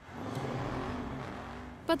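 A car going by: engine and road noise swell quickly, then fade away over about a second and a half before cutting off.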